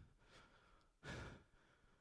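Near silence, broken about a second in by one short, audible intake of breath from a man.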